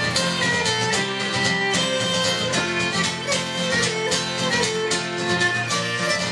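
Fiddle playing a Celtic-style melody in held notes over strummed guitar accompaniment, as a live instrumental introduction before the singing.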